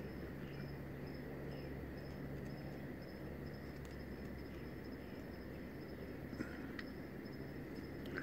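Crickets chirping faintly in a steady, repeating high-pitched trill over a low steady hum.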